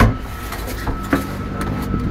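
Train interior running noise: a steady low rumble with a faint steady whine. A thump sounds right at the start.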